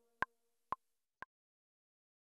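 Three faint, short metronome clicks evenly spaced half a second apart, as the last French horn note's reverberant tail fades out.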